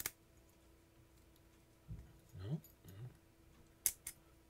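Small metal clicks from a brass Best-style six-pin lock core and its keys being handled, one sharp click at the start and another just before the end, with a short murmured voice in between.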